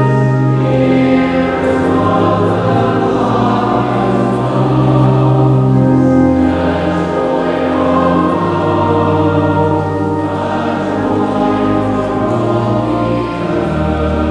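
Church choir singing in slow, long held chords that change every few seconds over a steady low bass line.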